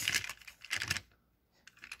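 Light clicks and taps of hard plastic toy freight wagons being handled in the fingers, mostly in the first second, with a few faint ticks near the end.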